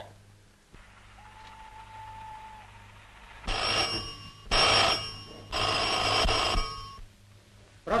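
A desk telephone's bell ringing in three bursts of about a second each, in quick succession, after a few seconds of faint hiss.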